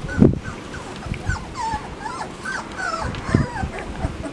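Chocolate Labrador retriever puppies giving many short, high, squeaky cries in quick succession. There is a low thump just after the start and another a little past three seconds.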